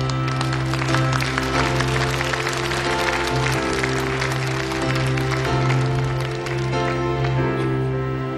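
Synthesizer intro played on a Roland D-70 keyboard, with sustained chords over a steady low bass note, while a studio audience applauds.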